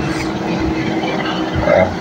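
Steady outdoor background noise: an even rumbling hiss with a faint steady hum, such as distant traffic or wind on the microphone.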